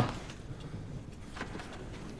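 Quiet background: a low steady hum of room tone, with one faint click about one and a half seconds in.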